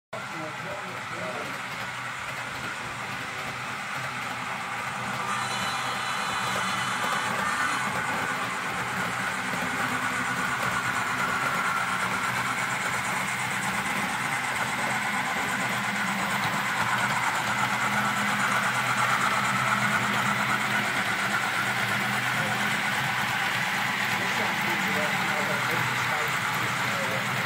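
HO-scale model of the Southern Aurora passenger train running along the layout track: a steady hum with wheel-on-rail noise that slowly grows louder as the train comes nearer.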